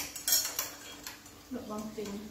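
Chopsticks and a spoon clicking against plates and the metal hot-pot pan, a few light clinks in the first half.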